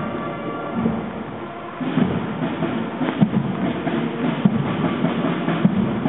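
A marching band's brass tune tails off, and from about two seconds in drums play a steady marching beat.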